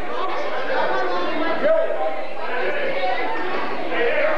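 Several people talking at once, overlapping conversation with no single voice standing out.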